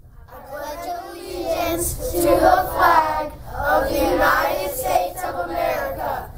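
A group of children reciting the Pledge of Allegiance together in unison, starting about a quarter second in.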